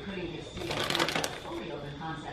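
Plastic bag of grated Parmesan crinkling as it is handled and shaken, in a short burst of rustling near the middle.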